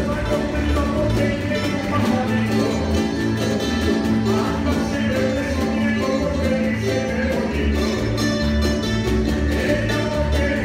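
Live Canarian parranda folk music: lutes (laúdes) and guitars strumming over a drum kit and hand drum, with a steady pulsing bass line.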